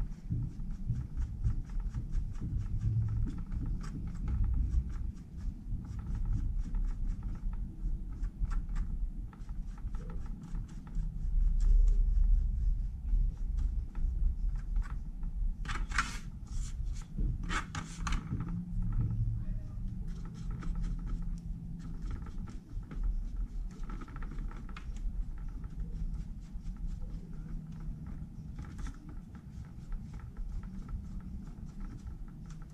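Metal tongs and hands scraping and scratching in oil-bonded casting sand, with small clicks and clinks against the steel flasks and aluminium tray, and a cluster of sharper clicks about halfway through. A steady low rumble runs underneath, louder for a moment a little before the middle.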